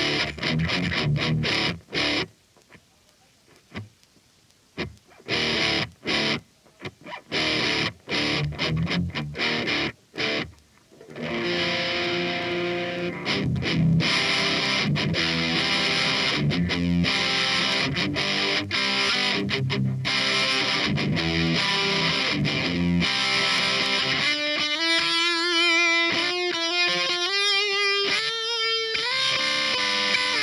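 Electric guitar played through an overdriven Laney Cub valve amp head. For about the first ten seconds it plays short, choked chords with silent gaps, then sustained distorted riffing, and near the end a line of single notes stepping upward.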